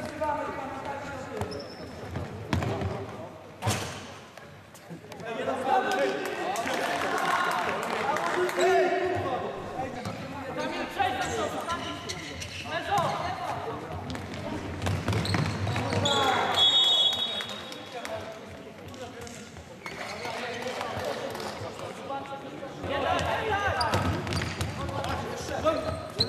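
Futsal ball being kicked and bouncing on a wooden sports-hall floor during play, with sharp knocks scattered through, mixed with players' voices calling out.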